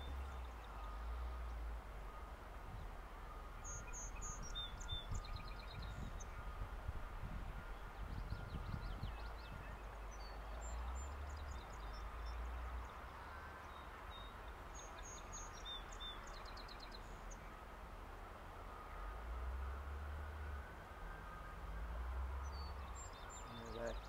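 Quiet outdoor ambience with a low wind rumble on the microphone. Faint, high-pitched chirps from small birds come in short runs four times.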